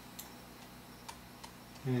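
A few faint, irregularly spaced clicks in a quiet room, with a short spoken word at the very end.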